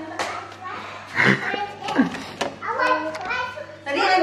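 Young children's babble and play noises in a room, with a few short sharp knocks.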